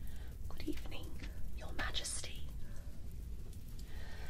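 A woman whispering a few soft words, with a sharp hissing 's' about two seconds in, over a low steady hum.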